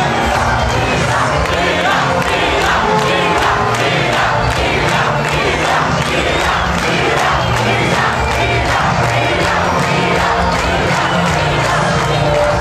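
Large crowd in a packed club shouting and cheering, many voices at once, over a fast, regular beat.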